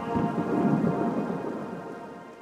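A grainy, low noise swell like distant thunder, from an outro transition effect, rising for about a second and then fading, over a held music chord that fades out with it.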